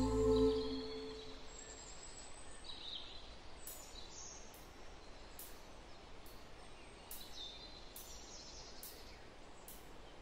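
Sustained ambient music tones fade out within the first second or so, leaving faint outdoor nature ambience with scattered short bird chirps. A soft, very high click repeats a little under once a second through the second half.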